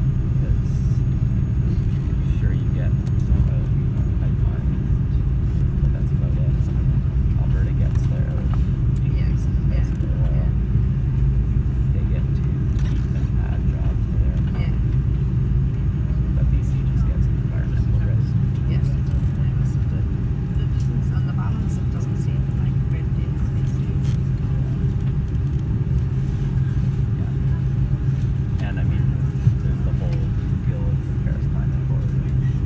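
Steady low rumble inside the cabin of an Airbus A330-243 taxiing, its Rolls-Royce Trent 700 engines at low thrust, heard from a seat over the wing.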